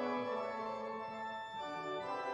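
Church organ playing held chords with moving inner and bass notes, in a reverberant sanctuary.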